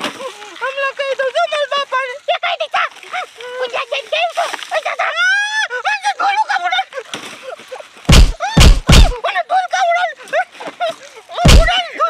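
A woman and a girl talking in Gujarati, broken by three loud, heavy thumps in quick succession about eight seconds in and one more just before the end.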